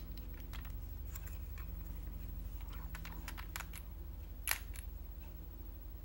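Small scattered clicks and taps of a glass nail polish bottle, its screw cap and a plastic swatch wheel being handled as the bottle is opened for a second coat, with one sharper click about four and a half seconds in. A steady low hum runs underneath.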